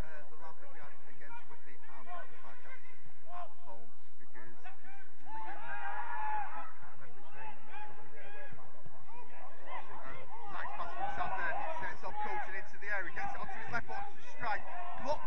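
People talking and laughing, the words indistinct, with voices growing busier and louder in the second half.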